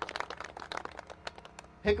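Hand clapping from a group of people, dense at first and thinning out over about a second and a half, then a man's voice over a PA comes back in just before the end.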